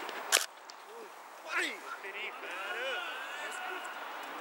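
A single sharp crack as the cricket ball meets the batter, bat on ball, followed by several players shouting.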